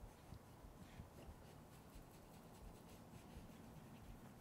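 Near silence with faint, quick scuffing strokes of an ink blending tool rubbed along the edge of a cardstock panel, applying distress ink.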